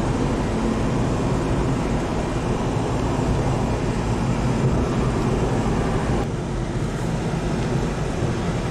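Steady road and engine noise heard inside a moving car's cabin: a continuous rumble of tyres and engine at highway speed, the hiss easing slightly about six seconds in.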